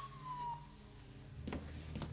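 Ambulance siren wailing, a single tone falling in pitch that dies away about half a second in.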